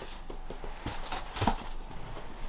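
Faint handling noise: a few soft knocks and rustles as things are moved about on a tabletop.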